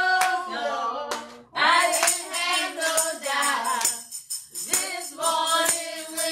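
A woman singing into a microphone while a handheld tambourine is struck in time with her. Her voice breaks off briefly twice, while the tambourine strikes carry on.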